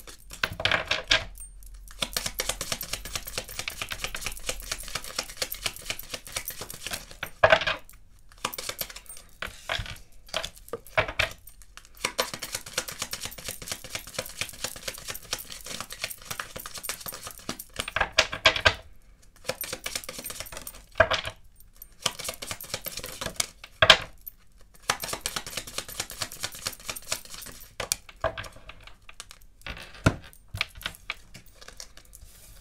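A deck of Kipper fortune-telling cards being shuffled by hand: a steady run of quick papery clicks and riffles, broken by short pauses and a few louder snaps.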